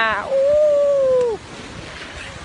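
A man's voice holding one long, high, almost sung call that drops in pitch and breaks off about a second and a half in.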